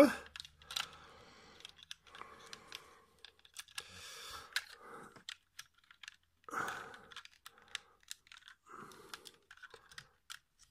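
Hard-plastic Transformers figure (Titans Return Sixshot) being handled: a scattering of light clicks and a few short scrapes as its arms are folded and parts pressed into place to seat the small Titan Master figure in the cockpit.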